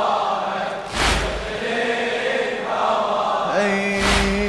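Slow, mournful religious lament chanted by male voices with long held notes over a background of other voices. A loud thump lands about a second in and another at the end.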